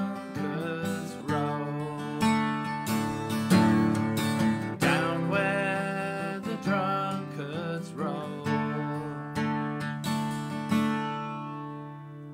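Acoustic guitar strummed and picked as a solo instrumental passage between verses, with a steady run of chord strokes. Near the end the last chord is left ringing and fades away.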